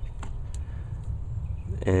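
Low, steady background rumble with two faint clicks in the first second, then a man's voice starting a word near the end.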